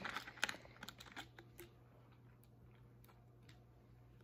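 A few faint clicks and taps from a plastic Sprite bottle being handled and its screw cap twisted, in the first second and a half, then near silence.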